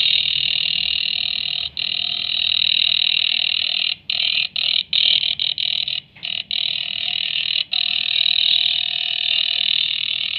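Shortwave signal on 13740 kHz, heard through a WebSDR receiver in upper sideband: a steady, helicopter-like chopping drone from a swept signal. It cuts out briefly several times between about four and eight seconds in.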